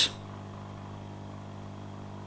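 Hot-air rework gun's blower fan running with a steady hum.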